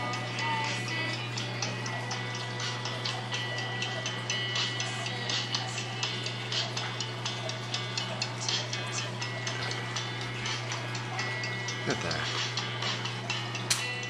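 A steady low hum with many faint, irregular clicks and ticks scattered through it.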